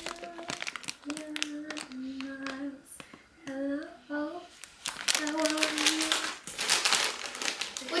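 A plastic chip bag crinkling and crackling as it is handled, with a voice humming short held notes over it.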